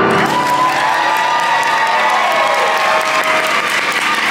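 Audience applauding and cheering as a song ends, with shouts rising over steady clapping.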